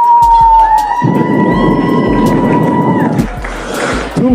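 A man blowing into a microphone to imitate the wind, heard as a high steady whistling tone over the PA. From about a second in until about three seconds in, an audience applauds and cheers over it.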